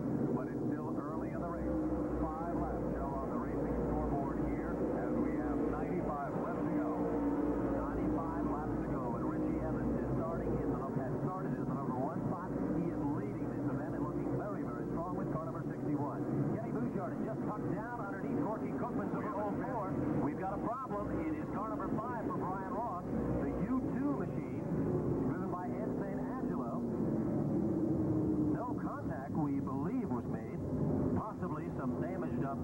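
A field of modified stock cars running together behind the pace car: a steady, droning mass of engine noise with indistinct voices over it, dull and muffled like an old videotape recording.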